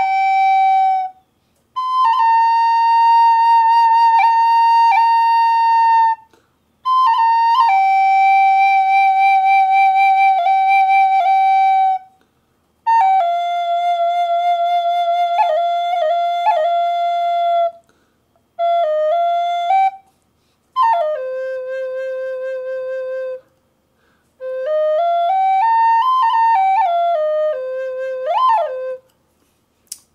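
Bamboo flute tuned to 432 Hz in C pentatonic minor, played in long held notes grouped into short phrases with brief breath pauses between them. Near the end a phrase drops to a lower note, then steps up and back down.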